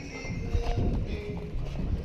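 Repeated thuds of feet landing on trampoline beds while bouncing and running across them, with background music playing faintly.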